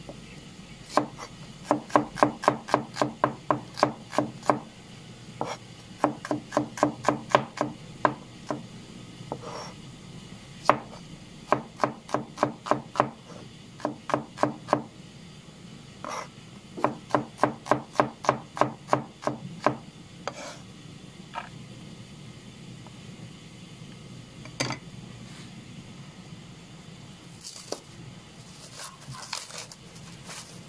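Kitchen knife chopping a red onion on a plastic cutting board: quick, even knocks of the blade on the board, about three a second, in four runs of a few seconds each, then a few single knocks.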